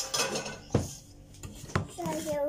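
A metal spoon knocking against a bowl a few times, the two loudest knocks about a second apart.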